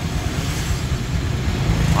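First-generation Honda Vision scooter's fuel-injected single-cylinder engine idling, a steady low, evenly pulsing running sound.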